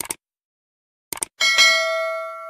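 Sound effects of an animated subscribe button: a short mouse click at the start and a quick double click about a second in, then a bright bell ding that rings on and slowly fades.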